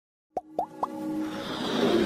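Logo intro sound effects: three quick rising plops about a quarter second apart, starting about a third of a second in, followed by a riser that swells in loudness.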